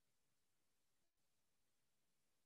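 Near silence: only a faint, steady noise floor, with a brief dip about a second in.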